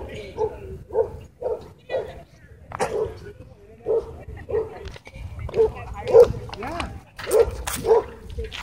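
A dog barking repeatedly, about two short barks a second, with a few sharp clicks near the end.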